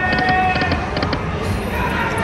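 Buffalo Link slot machine's electronic game sounds as its reels spin: held electronic tones with small groups of short, high ticks repeating, over steady casino background noise.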